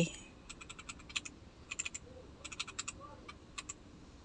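Eggplant omelette frying in oil in a nonstick pan, giving faint, irregular crackling pops in small clusters.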